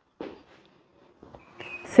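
Faint movement sounds of a person doing knee-raise drill reps: a short soft sound just after the start and faint scattered noise later, with the next spoken count starting at the very end.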